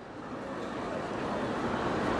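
City street bustle sound effect, traffic and urban hubbub, fading in from silence and growing steadily louder.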